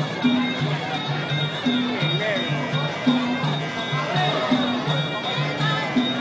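Sarama, the Muay Thai fight music: a wavering Java oboe (pi chawa) melody over low two-pitched drum strokes and a steady ching cymbal tick, a little under three ticks a second.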